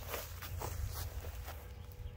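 Faint scuffs and rustles of a tiger stepping and sniffing along a chain-link fence over dry grass and dirt, a few soft, irregular noises over a low steady rumble.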